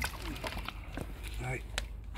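A few short light clicks and knocks of plastic gardening gear being handled, over a steady low background hum, with a man saying "Right".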